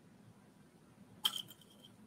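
Near silence, broken a little past one second in by one brief sharp click with a faint high ring that fades within half a second.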